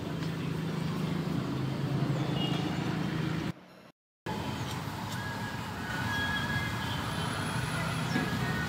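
Steady outdoor street background with traffic noise and a low engine-like hum, cut off to silence for about half a second a little before the middle, then resuming.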